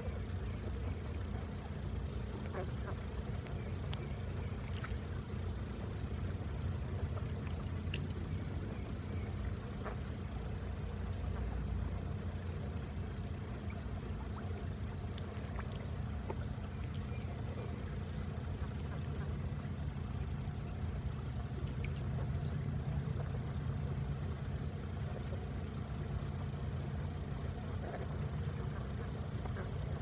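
A steady low mechanical hum, like an engine or motor running without change, with a few faint ticks scattered through it.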